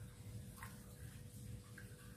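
Faint drips and light ticks as thin coconut milk is ladled with a metal ladle into a glass bowl, over a faint steady hum.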